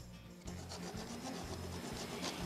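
Sheets of paper rustling faintly as script pages are shuffled and turned, starting about half a second in.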